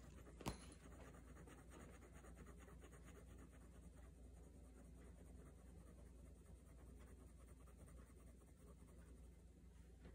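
Faint scratching of a fine-tip Micron pen drawing on sketchbook paper, with one sharp click about half a second in.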